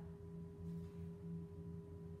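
Faint room tone with a steady background hum of a few held tones, unchanging throughout.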